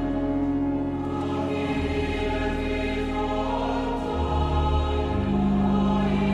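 A choir singing a slow sacred hymn in long held chords, the low notes moving to a new pitch every second or two.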